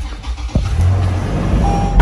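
Toyota 4Runner's 4.0-litre V6 started by push button, heard from inside the cabin: it catches suddenly about half a second in and runs at a steady fast idle. A thin steady beep-like tone joins near the end.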